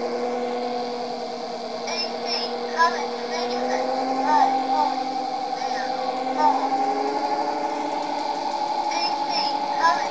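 Electric motor driving a homemade generator made from a water-pump motor with a 9 kg flywheel, running with a steady hum of several tones. The pitch rises slightly about four seconds in as the speed is raised from 500 toward 700 rpm. Short chirp-like squeaks come several times over the hum.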